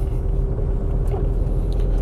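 Steady low background rumble with a constant hum tone above it, running unchanged through a pause in the speech.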